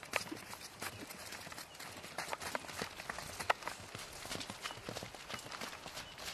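Hooves of several horses galloping across pasture turf: an irregular run of short thuds and knocks.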